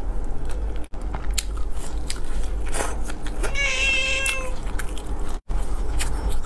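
Close-miked eating sounds of french fries and fried chicken: scattered crisp bites and chewing clicks over a low steady hum. About midway a single high, meow-like call sounds for about a second. The sound cuts out briefly twice.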